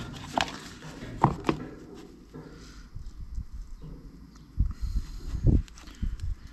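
Hand-handling noise as a wire is worked through a black rubber lamp part: a few sharp clicks in the first second and a half, then a cluster of dull low thumps near the end.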